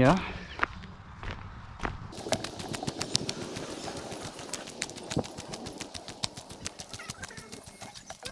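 Footsteps crunching on a dirt track strewn with dry leaves: a quick, irregular run of crunches and clicks from about two seconds in, over a steady high hiss.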